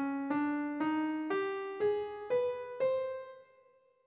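Piano playing the Thagian scale (scale 2447) one note at a time, rising from middle C; in this stretch it steps up through D, E♭, G, A♭ and B to the top C, about two notes a second. The top C rings out and fades.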